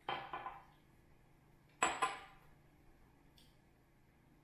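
Two glass whiskey glasses set down on a granite countertop, one after the other: a clink at the start with a couple of small knocks, then a second, sharper clink about two seconds in.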